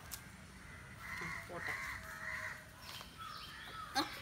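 Crows cawing in the background: a short run of about three harsh caws in the middle, then a fainter one later.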